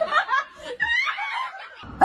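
A person laughing in a few short bursts during the first second or so.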